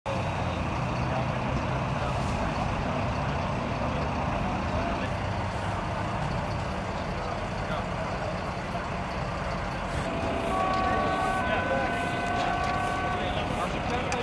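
Steady motorway traffic noise from vehicles passing at speed, with indistinct voices in the background. Near the end a steady tone at several pitches sounds for about two and a half seconds over the traffic.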